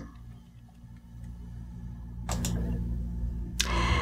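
Room tone in a pause of speech: a steady low electrical hum, a single faint click a little after two seconds in, and a short breath drawn near the end.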